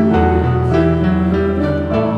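Piano accompaniment of a slow choral hymn playing held chords, a short instrumental passage between the choir's sung phrases.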